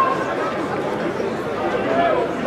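Overlapping voices of players and spectators chattering and calling across an open rugby ground. A steady high tone carries over from before and stops right at the start.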